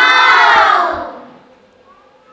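A group of young children shouting together in one loud, held cry that dies away about a second in.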